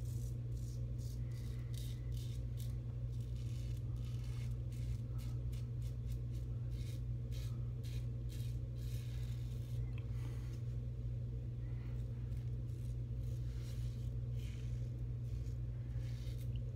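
Executive Shaving Co. Outlaw stainless steel double-edge safety razor cutting through lathered stubble in repeated short strokes, a crisp rasp with each pass, over a steady low hum.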